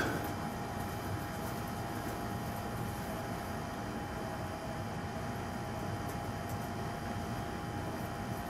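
Steady room background noise: an even hiss and hum with a faint steady tone, and no music or voices yet.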